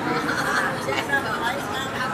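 Low, indistinct chatter of several voices talking at once, with no single clear speaker.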